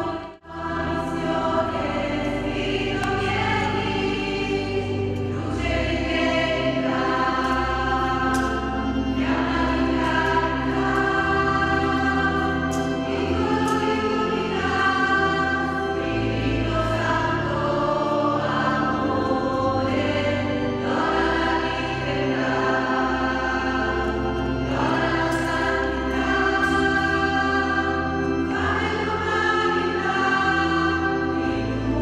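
Choir singing a hymn in long held notes, the sound dropping out for a moment just after the start.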